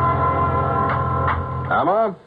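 Radio-drama music bridge between scenes: a held chord over a low bass note with a couple of short accents, fading out about a second and a half in. A woman's voice starts just before the end.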